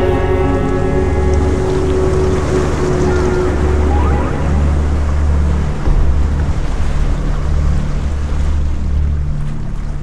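Ocean surf: waves breaking as a steady rush of noise with a heavy low rumble. A music track's last tones fade out over the first few seconds.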